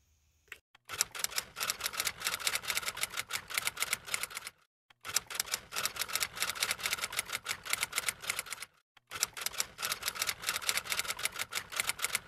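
Typewriter sound effect: rapid key clicks in three runs of about three and a half seconds each, with short pauses between them, as text types itself out on screen.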